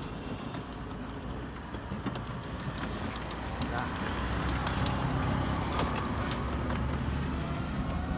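Street noise on a village road: a motor vehicle rumbling close by, getting louder from about halfway through, with scattered clicks.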